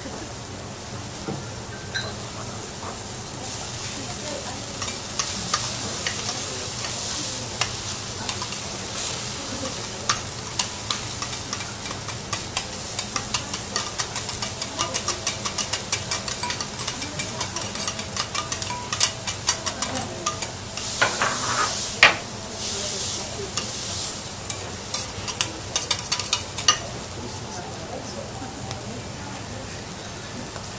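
Food sizzling in a hot pan while a metal utensil stirs and scrapes against it, with rapid clicks through most of the second half. The sizzle swells a few seconds in and again just past the three-quarter mark.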